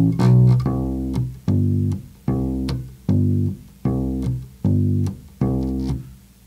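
Four-string electric bass guitar plucked with the fingers, playing a steady country bass line of single notes, about four every three seconds, each ringing and fading before the next. It goes back and forth between G on the third fret of the E string and D on the fifth fret of the A string.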